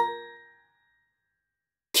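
The last note of a short bell-like music jingle, struck once and ringing out for about half a second before fading into dead silence. A voice starts right at the end.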